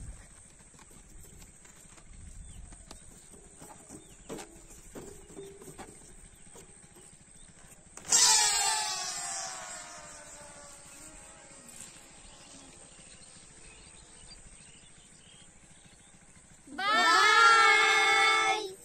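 Several inflated rocket balloons are released together, about 8 seconds in. They make a sudden loud squeal that slides down in pitch as the air rushes out, fading away over a few seconds. Near the end, loud singing starts.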